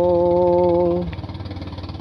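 A man's singing voice holds one long, steady note of a song for about a second, then stops. A low, evenly pulsing accompaniment carries on alone, more quietly, until the singing picks up again.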